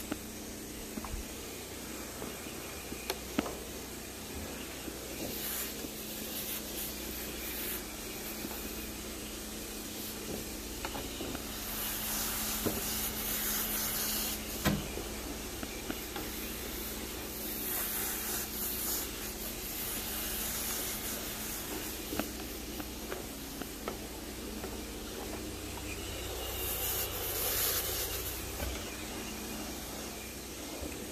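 Carpet pre-spray hissing from a pressurized spray wand in repeated bursts as the enzyme stain solution is misted over the carpet, with a steady low hum of equipment underneath and a few light clicks.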